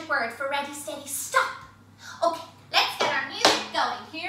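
Speech only: a woman's voice in short phrases with brief pauses.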